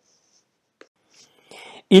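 Pause in a voice-over narration: near silence with a faint click, then a short breath in about a second and a half in, just before the narrator starts speaking again at the very end.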